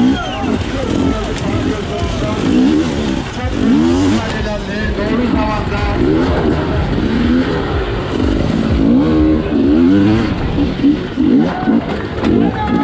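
Two-stroke enduro motorcycle engine revving hard under race riding, its pitch climbing and dropping back in repeated sweeps as the throttle opens and shuts through gears and corners.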